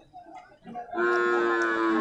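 Young water buffalo giving one long, loud moo that starts about a second in and falls slightly in pitch.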